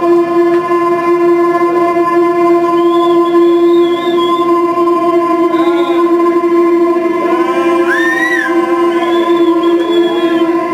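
Live electronic music: a steady keyboard drone held on one low note with its overtones, while wavering, sliding higher tones drift over it several times.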